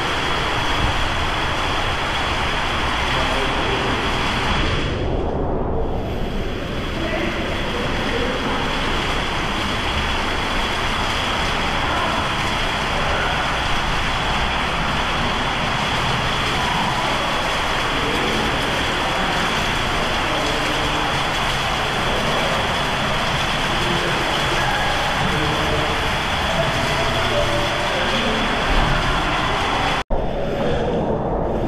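Steady rushing-water din of an indoor water park hall, with faint echoing voices mixed in.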